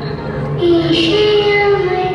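A song with a high singing voice holding long notes that slide between pitches, over sustained musical backing.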